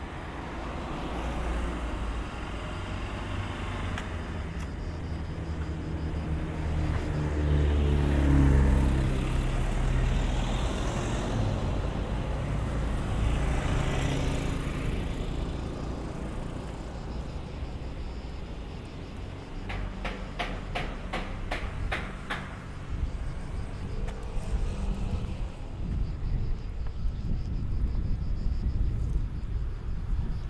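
Road traffic on a town street. A car passes close about eight seconds in, the loudest moment, its engine note falling as it goes by. Another vehicle, likely a motor scooter, passes around fourteen seconds in, and a brief run of rapid clicks follows a few seconds later.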